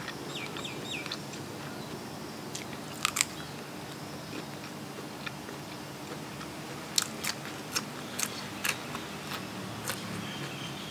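Close-up eating sounds: chewing with sharp crisp crunches as raw vegetable is bitten, a pair about three seconds in and a quicker run of about six near the end. Birds chirp briefly at the start.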